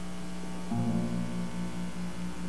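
Acoustic guitar notes ringing softly over a steady electrical mains hum; a low sustained note comes in just under a second in.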